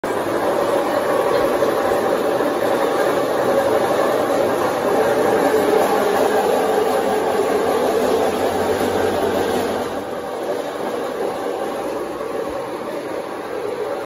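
FR-20NC roller-type tube straightening machine running, a metal tube passing through its rows of steel rollers with a steady mechanical rumble; a little quieter from about ten seconds in.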